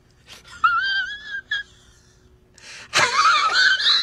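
A man's high-pitched, strained wail in two long, wavering cries, the second starting with a sharp click about three seconds in.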